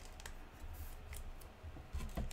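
Faint scattered clicks and light rustling from a trading card being handled between the fingers.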